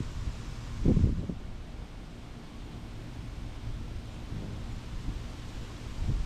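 Wind gusting on the microphone, a low buffeting noise that is strongest about a second in, with a faint rustle of leaves.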